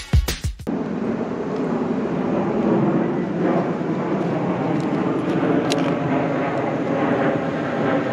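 A music sting cuts off under a second in. A steady outdoor background rumble follows, with no distinct events.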